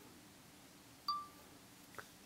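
A single short electronic beep from the iPhone 4's camera, one clear high note that fades out quickly, about a second in. A light click of the phone mount being handled follows at the end.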